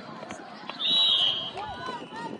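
One short, shrill blast of a referee's whistle, about a second in, with players' and spectators' voices around it.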